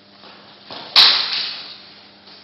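Two swords clashing: a short swish just before a single sharp clash about a second in, which rings briefly and fades.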